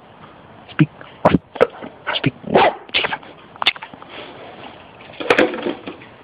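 Empty plastic drink bottle clattering on concrete and crinkling as a puppy bites and pushes it: an irregular string of sharp knocks and crackles.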